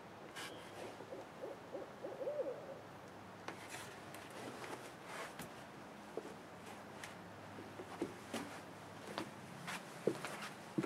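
Owls hooting: a quick run of low, rising-and-falling calls in the first few seconds. After that come scattered soft knocks and rustles.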